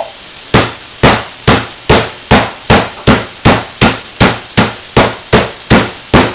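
Meat hammer pounding skirt steak and garlic inside a plastic zip-top bag on a kitchen counter to tenderize it. There are about fifteen even blows, a little under three a second, starting about half a second in.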